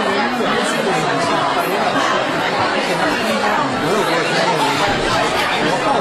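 A crowd of people chattering at once in a packed hall: a steady babble of many overlapping voices.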